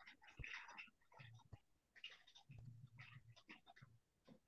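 Near silence on a video call, with faint, indistinct snatches of a quiet voice in the background.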